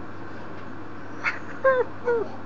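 A young child whimpering: quiet for about a second, then a short sharp cry, then a high falling whine that starts a string of repeated whimpers.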